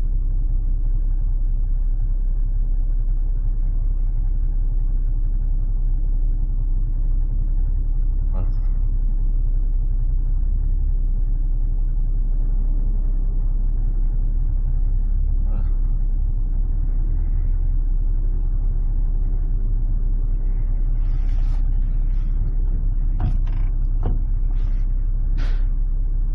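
Diesel engine of a 5-ton crane truck idling, heard from inside the cab as a steady, even low rumble, with a few brief faint clicks.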